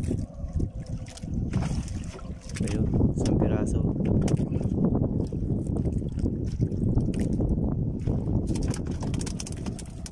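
Wind rumbling on the microphone aboard a small outrigger fishing boat at sea, with a faint steady hum in the first couple of seconds.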